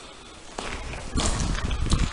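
Footsteps on a wet, muddy floor, with several heavy steps growing louder in the second half.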